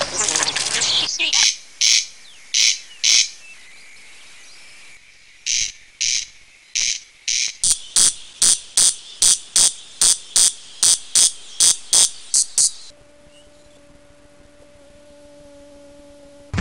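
Stridulating insect giving a series of short, high-pitched chirps, at first spaced irregularly, then in a quick regular run of about two or three a second that stops about three seconds before the end. A faint steady hum follows.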